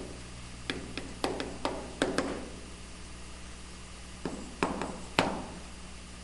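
Chalk writing on a blackboard: sharp taps and short scrapes as figures are written. There is a quick run of taps in the first two seconds and a few more, the loudest, near the end.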